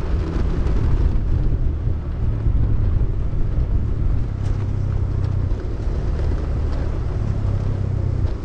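Steady low rumble of wind buffeting the microphone and wheels rolling over a rough concrete road while moving, with a few faint ticks.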